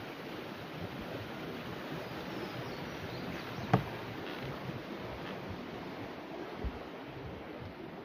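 Steady rushing outdoor background noise under footsteps crossing a wooden-plank suspension bridge, with one sharp knock from the boards just before four seconds in.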